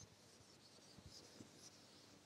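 Faint rubbing of a board duster wiping chalk off a blackboard, in several short swipes.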